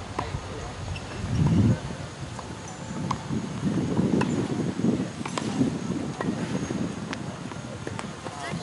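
Scattered sharp knocks of tennis balls being struck and bouncing on hard courts, about one a second at irregular spacing, over a low, uneven rumble.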